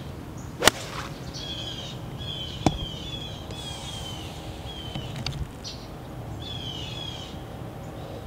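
A golf iron striking the ball with a sharp click a little over half a second in, then another sharp click about two seconds later. A bird calls over both, repeating short down-slurred chirps.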